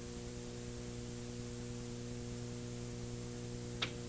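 Steady electrical mains hum with faint background hiss. A single brief click comes near the end.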